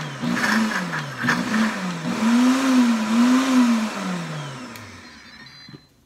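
Pampered Chef Deluxe Cooking Blender pulsing a thick chocolate mousse, the motor's pitch rising and falling with each pulse, then winding down about four and a half seconds in.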